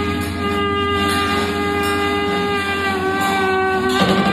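Tenor saxophone holding one long sustained note, with a slight dip in pitch about three seconds in, over a steady low drone.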